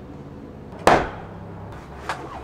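A single sharp knock just under a second in, a blow against a metal-and-glass storefront door frame as it is being knocked loose to come out. It rings out briefly.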